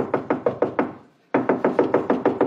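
Rapid knocking on a hotel room door, two quick runs of knocks with a short pause between them.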